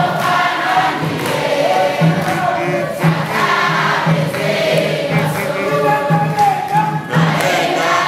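A church congregation of men and women singing a gospel praise song together, with a steady low beat about twice a second under the voices.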